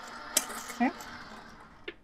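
Gemini Junior electric die-cutting machine running steadily as its rollers feed a stack of cutting plates through, with a sharp click about a third of a second in; the motor dies away near the end as the plates come out.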